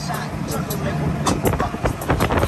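Street traffic heard from an open moving vehicle: a pickup truck passing close, with rushing wind on the microphone and indistinct voices.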